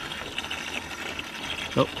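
Steady splash and trickle of water in a bass boat's open livewell, with its aerator pump running.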